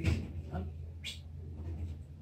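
A puppy whimpering in a few short cries, over a steady low hum of the room.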